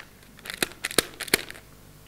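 A paper banknote crinkling and snapping as it is stretched taut between two hands close to the microphone: a few sharp crackles spread over about a second.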